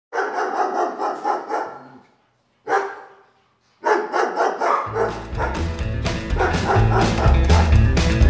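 A dog barking in a quick run of barks, then once more. About four seconds in, a rock-and-roll song starts, and a bass line joins about a second later.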